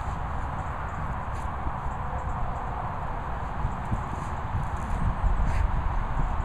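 A golden retriever rolling and wriggling on her back in grass, her body scuffling and knocking against the ground, over a steady low rumble.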